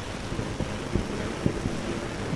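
Wind rumbling on the microphone over steady background noise, with a few soft low thumps.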